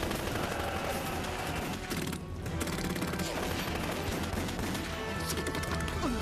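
Rapid gunfire, many shots in quick succession, in a sustained volley.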